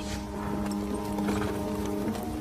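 Background music: a sustained low chord held steady, with an irregular low clatter or rumble beneath it.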